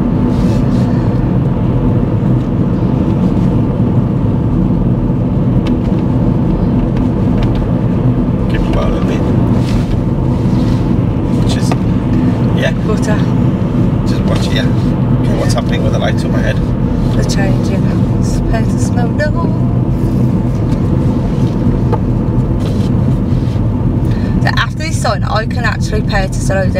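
Steady engine and tyre noise from inside a moving car on the road, with some talk or laughter in the cabin now and then.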